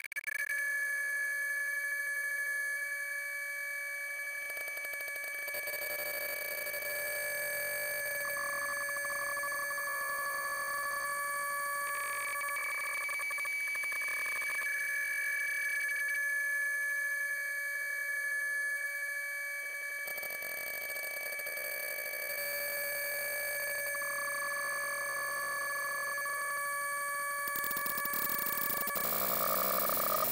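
Electronically processed, stretched logo audio: a steady drone of several held tones, like a dial tone, that shifts slightly a few times.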